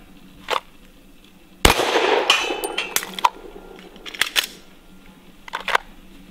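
A single pistol shot about a second and a half in, dying away with some ringing over about a second, followed by a few short sharp clicks near the end.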